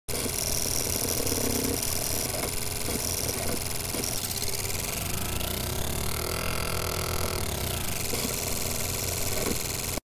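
Logo-intro sound effect: steady, dense static-like noise with a few thin tones, and a sweep that rises in the middle and then falls back. It cuts off suddenly at the end.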